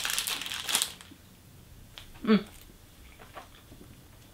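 Crinkling of a sweet's wrapper being unwrapped for about a second, followed by a few faint rustles.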